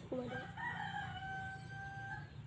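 A rooster crowing: one long drawn-out call held on a steady pitch, starting about half a second in.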